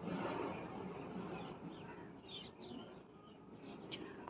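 Faint stirring of thin, watery dal gravy with a spatula in a frying pan, easing off about halfway through, with a few faint high chirps near the end.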